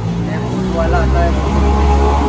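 A passing motor vehicle's low engine rumble, growing louder and loudest near the end, under people talking.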